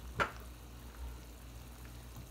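A pot of water at a rolling boil, bubbling steadily, with one brief click just after the start.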